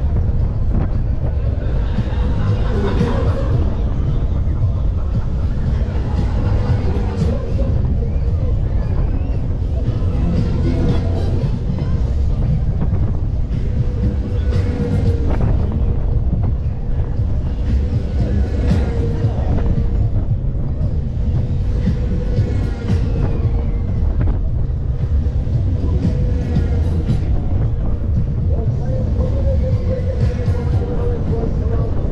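Fairground music with singing playing over a heavy wind rumble on the microphone of a moving ride, with a steady hum underneath.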